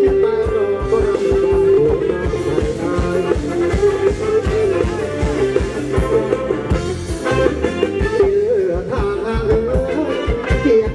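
Live band music for Thai ramwong circle dancing: a wavering melody line over a steady drum beat.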